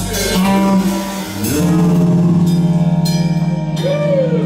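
Live rock band playing an instrumental passage: electric guitar and bass over a drum kit, with several cymbal crashes. Near the end a guitar note bends up and then slides down.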